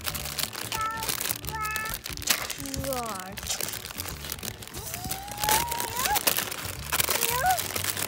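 Clear plastic toy-packaging bags crinkling and rustling as they are handled, over and over. A child makes several short wordless vocal sounds, one a long rising note about five seconds in.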